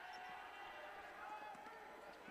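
Faint basketball arena sound during play: a low crowd murmur with a few soft thuds of a basketball being dribbled on the hardwood court.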